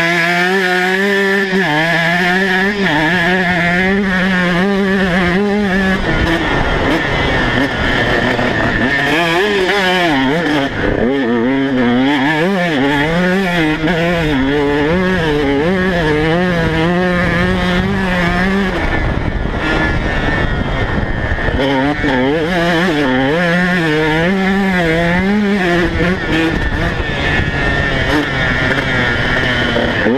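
KTM 150 SX two-stroke single-cylinder engine revving hard under load on sand, its pitch rising and falling about once a second as the throttle is worked, with a couple of brief drops where it backs off. Heard up close from a camera on the bike.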